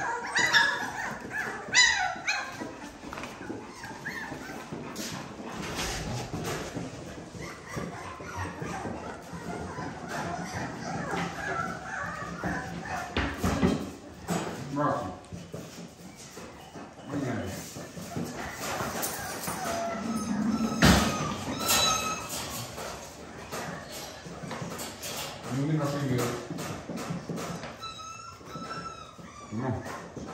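Three-and-a-half-week-old puppies whimpering and yelping in short high cries, several times, with bursts near the start, around twenty seconds in and near the end.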